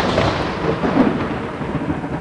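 Thunder rumbling over steady rain, a loud storm sound that slowly eases off.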